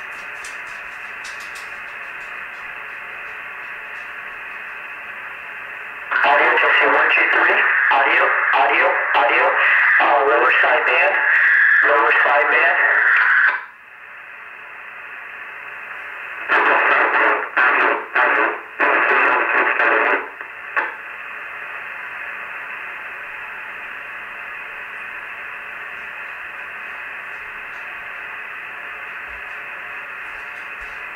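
CB radio receiver on sideband, its speaker hissing with steady narrow static. About six seconds in, a loud voice transmission comes through for some seven seconds and cuts off abruptly; a few shorter bursts follow a few seconds later, then the static returns.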